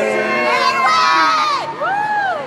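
Crowd of young people cheering and shouting, many voices at once, loudest and shrillest from about half a second to a second and a half in, with one rising-and-falling shout near the end.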